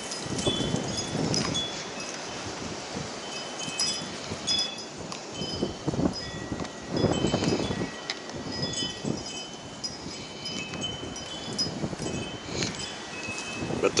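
Wind chimes ringing on and off at a few fixed high pitches, over a rushing background noise that swells now and then.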